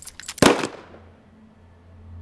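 A single handgun shot about half a second in, ringing off quickly, with a few sharp clicks just before it.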